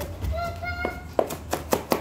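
Kitchen knife chopping celery on a wooden cutting board: several sharp knocks of the blade on the board in the second half.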